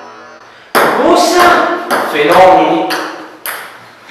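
Table tennis ball clicking sharply in a run of hits on the paddles and the table, with voices mixed in.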